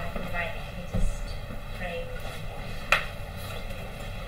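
Room sound in a hall with faint voices, a low bump about a second in and a single sharp click near three seconds.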